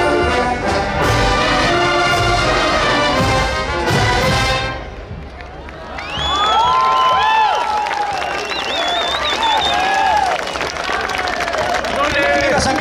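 A massed Oaxacan wind band of brass and clarinets plays a held chord that cuts off about five seconds in. Shortly after, the crowd cheers with shouts and whistles.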